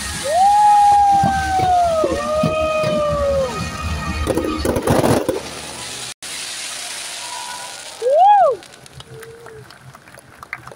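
Fireworks popping and crackling, with spectators giving long whooping cheers that rise and then slowly fall, one more near the end, over the tail of the show's music.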